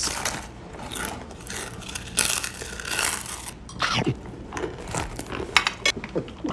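Crunching and crinkling as cheese puffs are eaten from a rustling snack bag, with a few sharper crackles.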